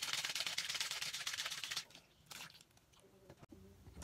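Small plastic bottle of water holding chunks of wet, marker-coloured paper being shaken hard: a rapid, even run of sloshing rattles that stops a little under two seconds in.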